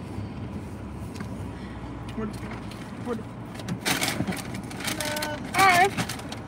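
Steady low hum of a car's cabin with the vehicle stationary, with a short burst of noise about four seconds in and a brief voice near the end.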